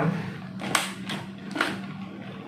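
Two sharp clicks about a second apart as the side locks of a vacuum sealer's lid are pressed shut, the right side first, then the left.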